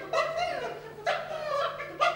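A few short, high-pitched yelping calls from a human voice, some sliding down in pitch, in a dog-like manner.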